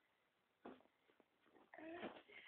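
An infant's brief, faint vocal sounds: a short one a little over half a second in, then a longer pitched sound starting near the end.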